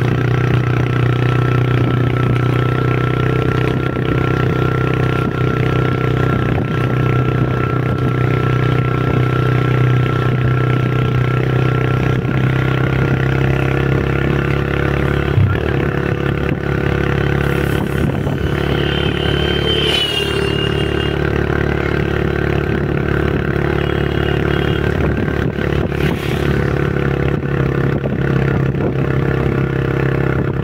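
A motor vehicle's engine running steadily at cruising pace, with road and wind noise, and a short high gliding tone about two-thirds of the way through.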